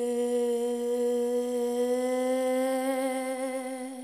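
A young woman humming one long, steady note into a handheld microphone, with no accompaniment; the note stops near the end.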